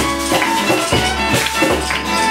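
Live acoustic band music: a hand drum beating out a regular rhythm under a violin and other held tones.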